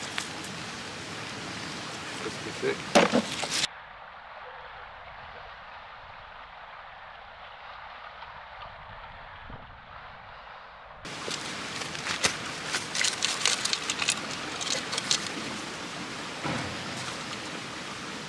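Steady noise of rain and a flowing river, turning muffled for several seconds in the middle. In the last third come a run of sharp clicks and knocks as a rusty tin can is handled off a fishing magnet.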